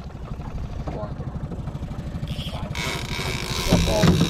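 Small outboard motor running steadily at trolling speed with a low, even putter. Near the end a loud rush of handling noise on the microphone joins it.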